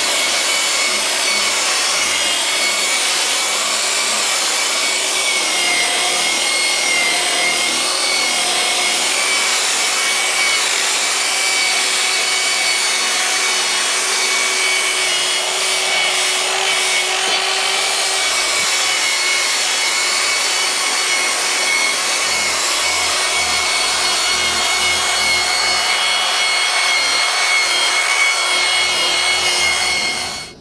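Electric rotary buffer running steadily, a steady whine over the hiss of its curved pad rubbing compound into the van's painted body.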